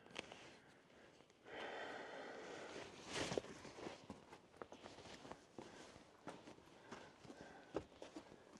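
Faint footsteps and scuffs on rock, with a row of small sharp ticks throughout and a louder scuffing burst about three seconds in, along with close breathing.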